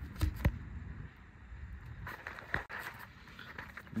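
A few light clicks and knocks, a cluster near the start and a couple more about two seconds in, over low steady background noise.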